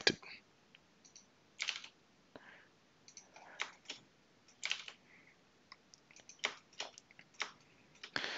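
Faint, irregular clicks of a computer keyboard being used, a dozen or so short taps spread unevenly, some in quick pairs.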